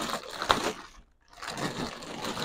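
Plastic wrapping crinkling and rustling as it is pulled off a heavy boxed unit, with a sharp crack about half a second in. The sound drops out for a moment just after a second in.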